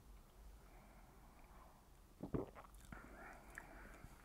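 Mostly near silence, broken by quiet mouth sounds from tasting a sip of whiskey: a few short wet clicks and smacks of the lips and tongue a little over two seconds in, then a soft breath.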